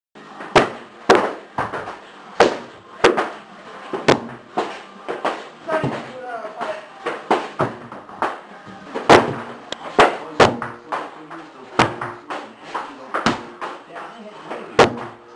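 Sharp, irregular smacks and thuds from a group workout in a martial-arts gym, a few every second, over a murmur of voices.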